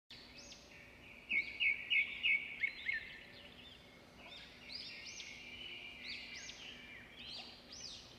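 Birds chirping, with many short, overlapping calls. A louder run of about five quick repeated notes comes between one and three seconds in.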